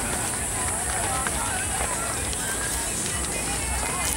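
Hikers walking along a dirt trail: footsteps and indistinct chatter from the group, over a steady high-pitched hiss and a low rumble.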